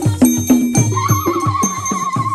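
Traditional dance music with a fast, even drumbeat, about four or five strokes a second. About a second in, a high wavering tone joins and is held over the beat.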